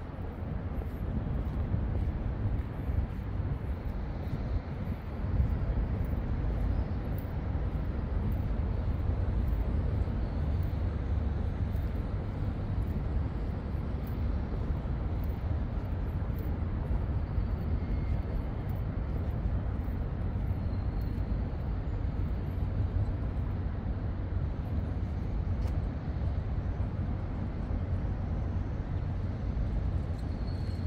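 A steady low outdoor rumble of city ambience, even in level throughout.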